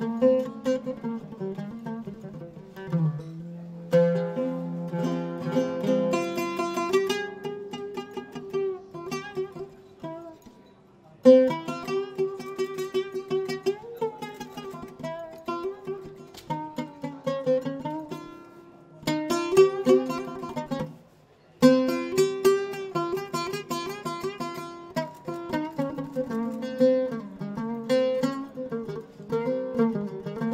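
Music: a melody played on a plucked string instrument, breaking off briefly twice.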